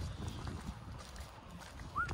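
Wind buffeting a phone microphone outdoors: a steady low rumble with faint scattered knocks, and a short high chirp right at the end.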